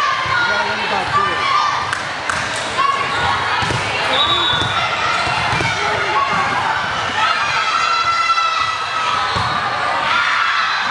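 A volleyball rally: the ball being struck by players' hands and forearms in repeated sharp hits, over players and spectators calling out, in a large gym.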